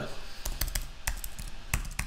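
Typing on a computer keyboard: a quick, irregular run of about nine key clicks entering a phone number into a web form.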